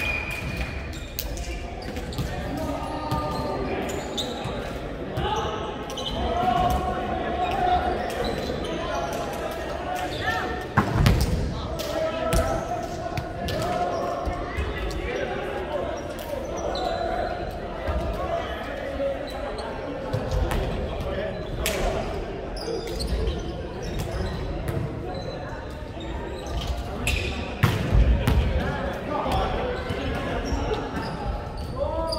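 Echoing sports hall full of indistinct players' voices talking and calling. Now and then a volleyball smacks or bounces on the wooden court, loudest about a third of the way in and again near the end.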